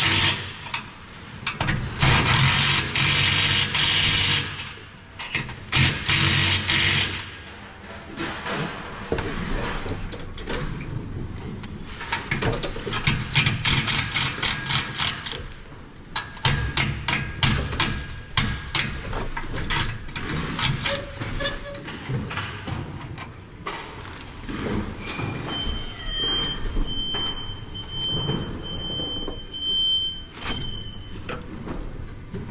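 Cordless drill running in bursts of a second or two as fasteners are driven into an overhead fan mount, with long runs of quick clicking between the bursts. A high, evenly spaced beeping sounds near the end.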